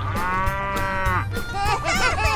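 A cow mooing once, one long call lasting just over a second, over background music with a steady beat.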